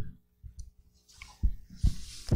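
A few soft, low knocks with small clicks between them: one right at the start, one about a second and a half in, and another near the end.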